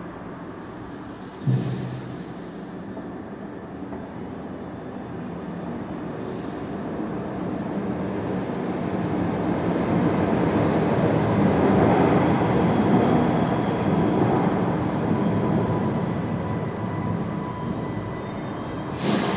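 A low thump about one and a half seconds in, then the rumble of a passing train that swells over several seconds, is loudest around the middle and fades again.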